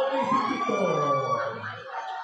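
A man's long drawn-out call, held on one breath, its pitch sliding down over about a second and a half before fading near the end.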